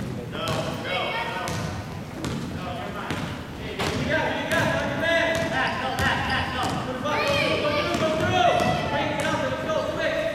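Basketball bouncing on a hardwood gym floor as a player dribbles up the court, with many voices of players and spectators calling out and chattering around it in the large gym.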